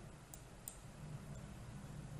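Quiet room tone with a faint steady hum and two faint, short clicks less than half a second apart in the first second.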